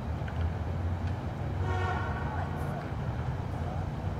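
Street ambience: a steady low rumble of traffic, with a brief horn sounding about two seconds in.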